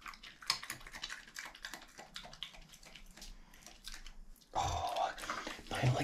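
European badger chewing food off a tiled floor: a quick run of small, crisp crunches and smacks. About four and a half seconds in, a louder rustling noise comes in over them.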